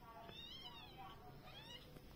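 A calico kitten meowing faintly twice: a longer high-pitched meow that rises and falls, then a shorter one near the end.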